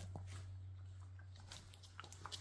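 A few faint taps and clicks on a wooden floor over a steady low hum.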